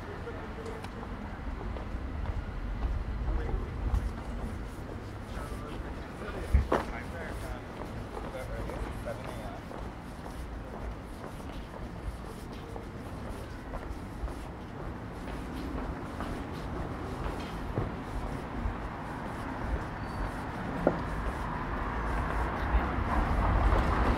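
City street ambience: indistinct voices of passers-by over a low rumble of distant traffic, with one sharp knock about six and a half seconds in. It gets louder near the end as people pass close by.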